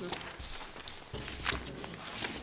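Meeting-room noise during a pause: scattered shuffling, rustling and light knocks, with faint voices in the background.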